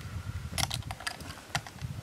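A few light clicks and rustles of handling, a quick cluster about half a second in and one more near the end, over a low rumble.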